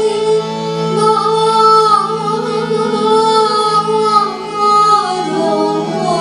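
Women singing a slow Bengali song in long, gliding notes, accompanied by a harmonium's steady drone, violin and keyboard.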